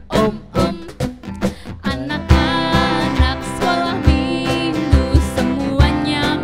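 A woman singing into a microphone to a strummed acoustic guitar.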